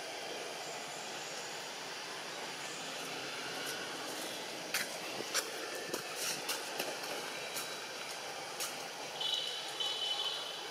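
Steady outdoor background hiss, with a run of sharp clicks and snaps from about halfway through and a short high-pitched chirp near the end.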